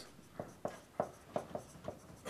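Marker pen writing on a whiteboard: about six short, separate strokes as a word is written.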